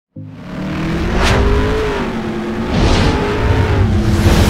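Intro sound effect of a car engine revving, its pitch rising, with two whooshes, about one and three seconds in.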